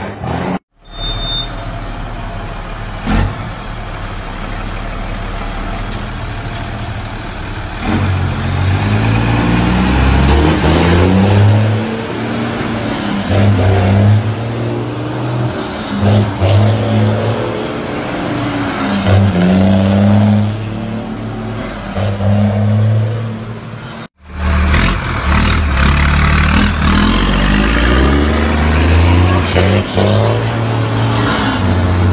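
Straight-piped diesel truck engines revving and pulling away. The engine note climbs, breaks off and drops again over and over as the driver shifts up through the gears. The sound cuts out abruptly about a second in and again about 24 seconds in.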